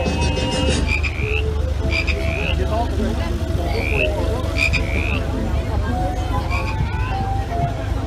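Recorded frog croaking played from a carnival float's sound system: short rising croaks repeated every half second to a second, some with a quick rattle, over a steady low rumble.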